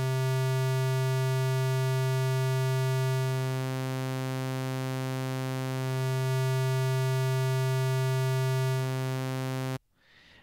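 Native Instruments Massive software synthesizer holding one steady low note, its oscillator morphing back and forth between a square wave and a saw wave, the tone changing colour every few seconds as half of its overtones drop out and return. The note cuts off just before the end.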